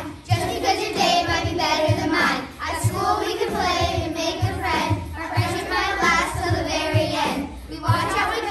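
A group of children rapping lyrics in unison over a backing beat, with a steady low kick drum thumping about three times a second.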